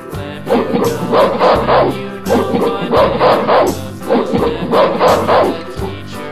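A rapid series of short, loud gorilla calls, coming in runs of two or three, over background music.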